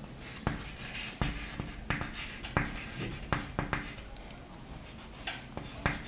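Chalk writing on a chalkboard: an irregular run of short taps and scratches as a word is written, thinning out for a moment about two-thirds of the way through.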